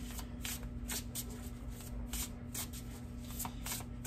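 A deck of tarot cards being shuffled by hand: a quick, even run of soft card snaps, about three to four a second.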